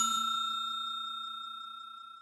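Bell-like ding sound effect of a subscribe-button animation: one high ringing tone, struck just before, fading away steadily.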